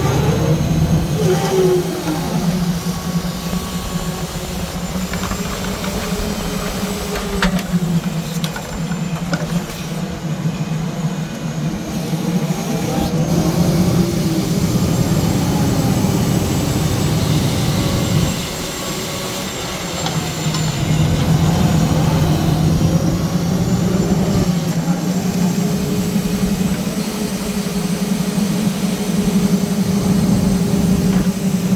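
Log truck's hydraulic knuckle-boom loader working while it unloads logs: the engine runs steadily under load, with hydraulic whine rising and falling in pitch as the boom and grapple move. A few short knocks come from the logs being dropped onto the pile.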